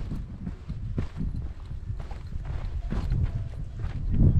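Footsteps of a hiker walking downhill on a mountain trail, irregular crunching steps over a steady low rumble.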